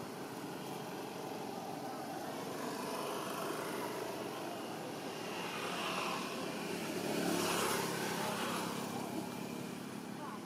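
A motor vehicle passing, its sound swelling to a peak about seven to eight seconds in and then fading, over steady outdoor background noise.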